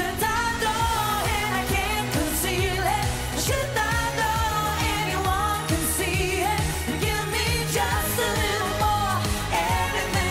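Live dance-pop song: a female lead vocal sings a melody with vibrato over a steady electronic dance beat and bass line.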